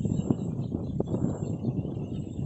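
Wind buffeting the microphone in gusts, with a faint steady chorus of frogs behind it.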